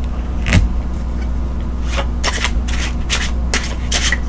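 Tarot cards being handled and shuffled: a string of short card flicks and scrapes, over a steady low hum.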